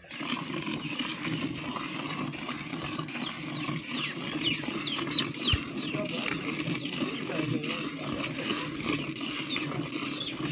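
Water buffalo being hand-milked: milk streams squirting steadily into a partly filled steel pail. A few short high chirps come about four to five seconds in.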